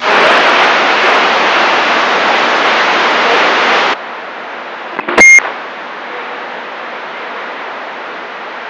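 Radio receiver static between transmissions on a CB radio: loud, even hiss for about four seconds that drops to a softer hiss. About five seconds in, a short, loud beep breaks through, like a roger beep or a keyed-up carrier.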